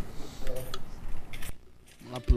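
A few faint clicks and small metallic rattles as samba instruments, a pandeiro and a cavaquinho, are picked up and readied to play.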